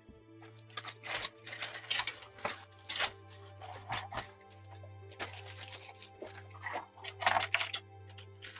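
Clear plastic bag crinkling and rustling in bursts as large plastic model-kit sprues are handled and slid out of it, loudest near the end, over background music with held notes.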